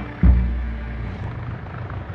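A deep cinematic bass hit about a quarter second in, fading into a low steady rumble.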